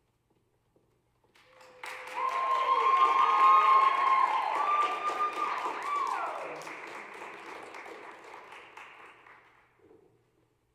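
Audience applauding as the performers come on stage: the clapping starts about a second and a half in, swells quickly, then fades away to nothing near the end.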